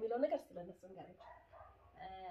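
Women talking: a voice with quickly rising and falling pitch in the first half second, then quieter, broken-up talk.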